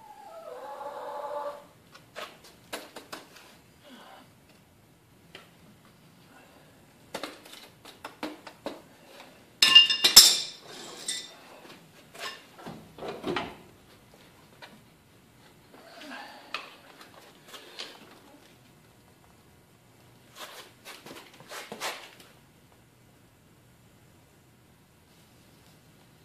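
Metal clanks and clinks of steel foundry tools being handled, with crucible tongs working on a hot crucible at a small melting furnace, in scattered knocks. The loudest is a ringing metal clank about ten seconds in.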